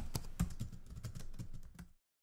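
Typing on a computer keyboard: a quick, irregular run of key clicks that stops just before the end.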